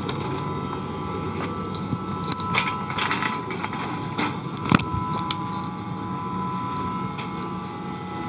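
Steady whir of the International Space Station's cabin ventilation fans and equipment, with several constant hum tones. Over it come occasional light knocks and scrapes as a floating astronaut pushes off hatch rims and handholds, with one sharper knock near the middle.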